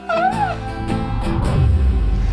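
Soft trailer music, with a baby's short high-pitched squeal that rises and falls near the start.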